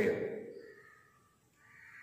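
A pause in a man's sermon: his last word trails off with some room echo, and a faint, brief sound in the background follows about half a second in, before the room goes nearly silent.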